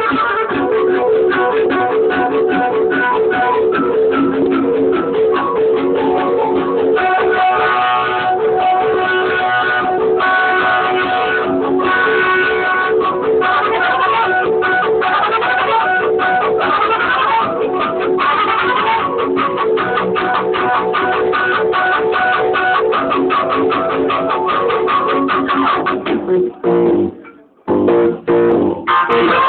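Live instrumental ensemble music led by guitar: a rapidly repeated plucked note under sustained higher lines. The music drops out for a moment near the end, then comes back.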